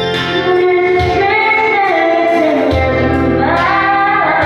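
A woman singing karaoke into a microphone over a recorded backing track, holding long notes that glide up and down.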